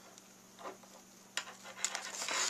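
Faint handling sounds of cardstock and adhesive strip being worked by hand: a soft rustle, then two sharp clicks about half a second apart in the second half.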